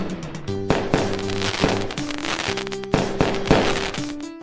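Cartoon fireworks sound effect: bursts of dense crackling with several sharp pops, over light children's background music.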